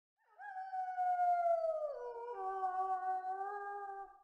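Grey wolf howling: one long call that starts high, slides slowly down, drops to a lower pitch about halfway through, and holds there until it fades.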